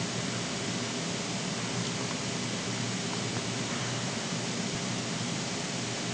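Steady, even background hiss with no distinct sounds: room tone or recording noise.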